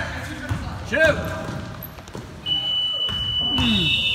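Basketball game in a gym hall: shouts from players and spectators, and a ball bouncing on the hardwood. About two and a half seconds in, a steady high-pitched buzzer tone starts and holds.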